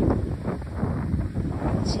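Gusty wind buffeting a phone's microphone: an uneven low rushing noise that swells and dips.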